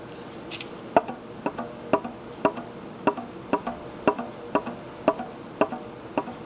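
Fingers gently tapping a balloon stretched as a diaphragm over the end of a plastic container, short evenly spaced taps about two a second. Each tap pushes a smoke ring out of the hole in the paper cover.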